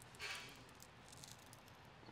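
Near silence: quiet room tone with a faint, brief rustle a fraction of a second in and a few tiny ticks.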